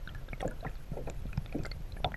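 Water sloshing and bubbling around a camera held just under the sea surface, with a low rumble and irregular small clicks and pops.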